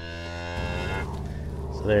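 A cow mooing: one long, drawn-out moo lasting nearly two seconds.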